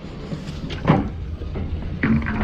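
A couple of short knocks, the strongest about a second in, as gear is handled on a boat deck, over a low steady rumble.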